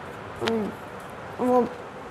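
A young girl's voice saying a drawn-out 'vo' twice, hesitating mid-sentence while telling a story.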